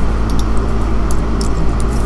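Steady low hum and rumble of background noise, with a few faint clicks of keyboard typing.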